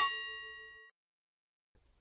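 A single bell-like chime sound effect that rings out and fades away within about a second. It cues a question mark popping up on screen.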